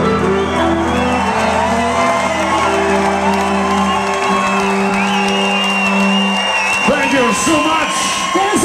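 Live folk-punk band with violin and electric guitar ending a song on a long held final chord, the low notes dying away about halfway through and the rest about six and a half seconds in. Then the crowd breaks into cheers, shouts and whoops near the end.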